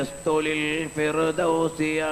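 A man chanting a devotional supplication in long, held notes, with short breaks between phrases.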